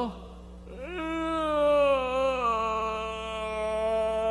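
A man's voice drawing out one long, whiny groan, mimicking a sleepy child who does not want to be woken. It starts about a second in, slides down in pitch and then holds level.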